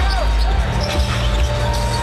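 Basketball being dribbled on a hardwood court, a few short bounces over the steady rumble of an arena crowd.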